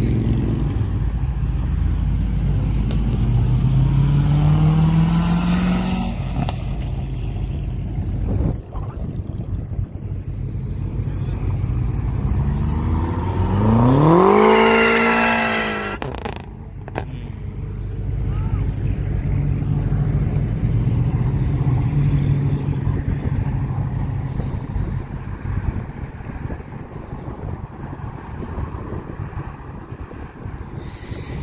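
Cars pulling away and driving past: an engine revs up through a gear a few seconds in, and about halfway through a car accelerates hard past, its engine note rising and then falling as it goes by, the loudest moment. A low rumble of engines and traffic runs underneath.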